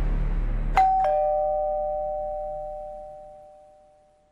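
Two-tone ding-dong doorbell chime: a high note, then a lower one a moment later, both ringing out and fading away over about three seconds.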